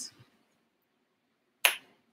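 A pause in conversation broken near the end by a single short, sharp click.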